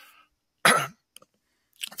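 A man coughs once, short and sharp, clearing his throat close to the microphone.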